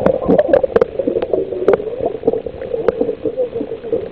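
Air from a pump bubbling out of the line that feeds a submerged plastic-bottle submarine: a steady, wavering gurgle with scattered sharp clicks.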